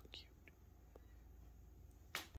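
Near silence: quiet room tone with a steady low hum, and a faint whispered voice fragment trailing off right at the start.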